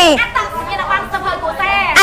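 Speech: a voice talking with pitch glides, with background chatter during a quieter stretch in the middle.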